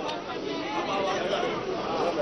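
Indistinct chatter of many voices at once from a crowded congregation in a large hall, with no single voice standing out.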